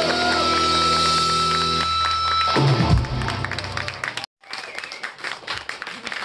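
Live rock band sustaining a final chord, with electric guitar bending notes over it, until a last low hit ends it about two and a half seconds in; scattered applause follows.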